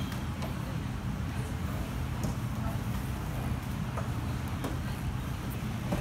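Steady low rumble with a few faint, short knocks scattered through it.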